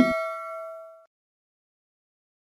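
Notification-bell sound effect from a subscribe-button animation: a single bell-like ding with several clear tones, ringing and fading away about a second in.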